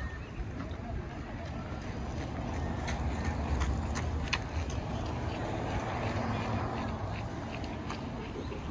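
Outdoor ambience: a steady low rumble with faint distant voices, and a few sharp clicks about halfway through.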